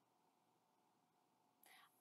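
Near silence: room tone, with a faint hiss just before speech resumes near the end.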